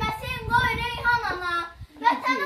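A young girl's voice reciting a poem aloud in Azerbaijani in a high, sing-song tone, breaking off briefly near the end.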